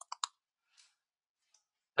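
Computer keyboard keystrokes: three quick clacks at the very start as a word is finished being typed, then near quiet.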